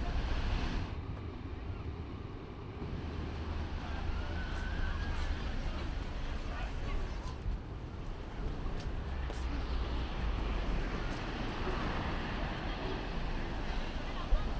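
Outdoor seaside ambience: wind rumbling on the microphone over a steady wash of distant surf, with passersby talking now and then.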